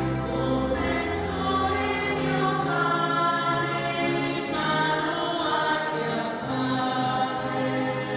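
A choir singing slowly in long held notes, with low sustained notes beneath the voices.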